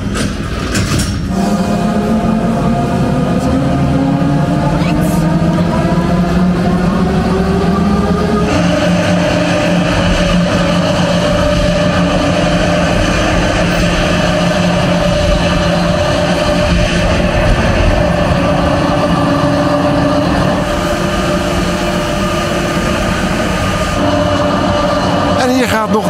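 Drive motors of an Enterprise wheel ride whining, rising slowly in pitch for several seconds as the wheel speeds up. Then a steady, many-toned running hum that changes abruptly about a third of the way in.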